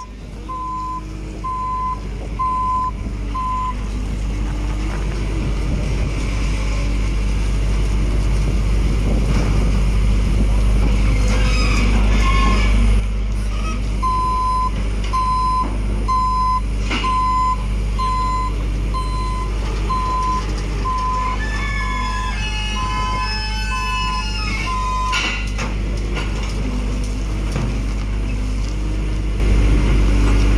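JCB 525-60 telehandler's diesel engine running with a steady low drone while its reversing alarm beeps about five times every four seconds, for the first few seconds and again for about ten seconds from midway, as the machine backs up. A few high squealing glides come in toward the end of the second run of beeps.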